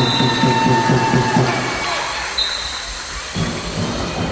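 Handball play in a sports hall: a few sustained high squeals of court shoes on the hall floor over a low, even pounding of about four strokes a second. The pounding stops about halfway and comes back near the end.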